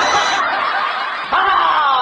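Laughter, snickering, in two bursts, the second starting just over a second in.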